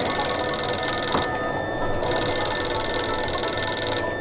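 Telephone ringing: two long rings with a short break a little over a second in.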